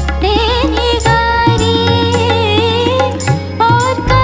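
A young woman singing a Bollywood song live into a microphone, her voice bending and ornamenting the notes, over instrumental accompaniment with steady bass and percussion. The deep bass drops out for a couple of seconds in the middle and comes back near the end.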